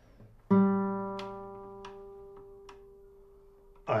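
A nylon-string classical guitar's third (G) string plucked once and left to ring, fading slowly over about three seconds at a steady pitch while the guitar is being tuned, with a few faint clicks over it.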